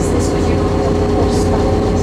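Bus engine running, heard from inside the passenger cabin: a steady low hum with a constant drone over cabin rattle and road noise.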